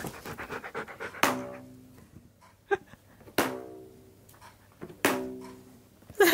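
A husky breathing quickly in short rapid puffs during the first second. Then three separate steady-pitched musical notes about two seconds apart, each starting sharply and fading out.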